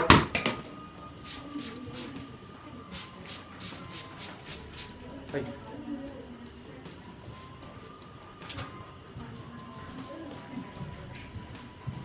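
Hand-pump water spray bottle spritzing onto wet hair: a sharp sound right at the start, then a run of quick short spritzes over the next few seconds. A faint steady tone runs underneath.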